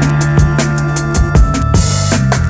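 Instrumental hip-hop beat: a drum kit's kick and snare hits over a sustained bass line and held chords.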